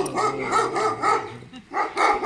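Small white long-haired dog barking in a fast run of short barks, about five a second, breaking off briefly about three-quarters of the way through.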